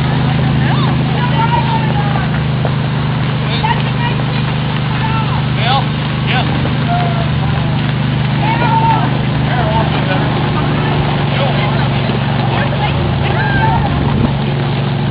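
Steady low drone of the golf cart towing a homemade train of carts, with scattered voices and short calls from the riders over it.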